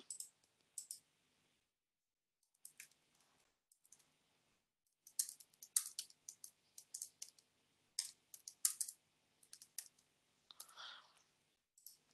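Typing on a computer keyboard, with mouse clicks: a scattered run of light, separate key clicks, busiest in the middle stretch.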